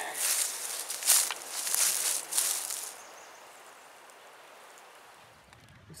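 Footsteps in leaf litter on a forest floor, about four steps in the first three seconds, then a quieter stretch of outdoor background.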